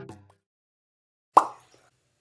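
The tail of the music fading out, then a single short plop sound effect a little past halfway, dropping quickly in pitch.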